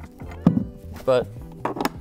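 A single sharp metal clack about half a second in as the tablet-holder accessory is pulled off its metal mount on the theater chair's armrest, over steady background music.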